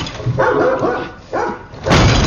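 A dog barking twice, then a sudden loud bang just before the end.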